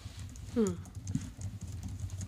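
Low, uneven knocks and handling noise on a conference table, picked up by the table microphones, with a brief falling vocal sound about half a second in and a sharp click just after.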